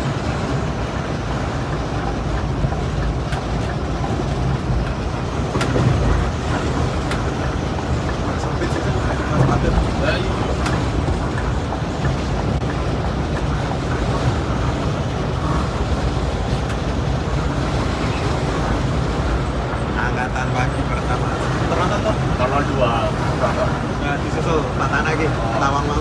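Steady engine and road drone of a rear-engined Scania K360iB coach cruising at highway speed, heard from inside the front of the cabin.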